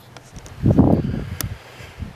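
A short, low rumbling rush of noise on the handheld camera's microphone, starting about half a second in and dying away after a second, followed by a faint click.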